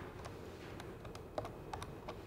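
Faint typing on a computer keyboard: scattered, irregular keystroke clicks.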